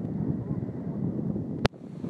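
Wind buffeting a phone microphone at the water's edge, a steady low rumble, cut off by a sharp click near the end.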